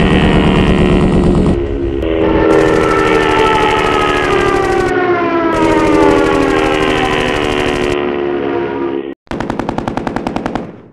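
Animated sound-effect track of a propeller fighter plane's engine drone, a pitched drone that slowly falls in pitch and is cut abruptly several times. Just after nine seconds in, a short gap, then a rapid burst of machine-gun fire, about ten shots a second.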